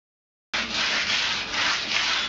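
Abrasive rubbing on a concrete wall surface in repeated back-and-forth strokes, starting abruptly half a second in.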